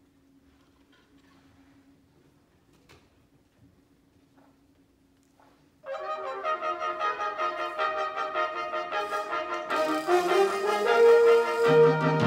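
Near silence with a faint steady hum for about six seconds, then a high school symphonic band comes in suddenly with fast repeated notes. The sound builds in loudness, and deeper notes join near the end.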